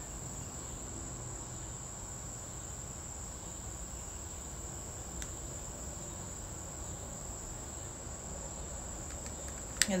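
Butane stick lighter held lit against the tip of a palo santo stick: a steady, thin, high-pitched tone from the flame, with a faint click about five seconds in.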